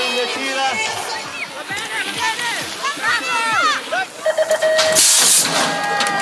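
Excited voices throughout, from a race announcer and shouting spectators. About five seconds in comes a short, loud burst of clattering noise as BMX riders and their bikes crash onto the track.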